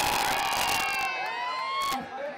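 Rally crowd cheering and shouting, many voices overlapping. The loudest cheering comes in the first second.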